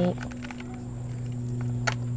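Fingers pressing loose organic potting soil around a plant cutting in a clay pot, heard as faint soft crackles and ticks with one sharper click near the end. All of it sits over a steady low hum with a thin high whine.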